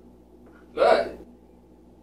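A single short, sharp vocal sound about a second in, lasting about half a second.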